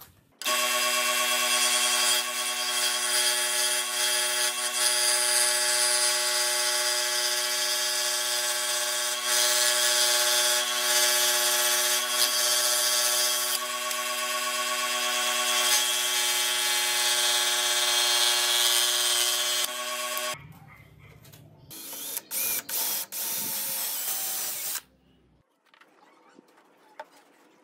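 Electric scroll saw running steadily with a constant motor hum while its blade cuts a curve in a piece of hardwood; it stops about twenty seconds in. A few short, loud bursts of noise follow near the end.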